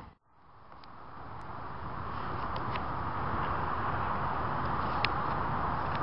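Steady, low outdoor rumble that fades in over about two seconds after a brief silence, with a few faint clicks.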